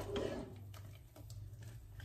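A few faint clicks and taps as a black plastic slotted spoon scoops cooked pasta out of a pot of water and drops it into a frying pan.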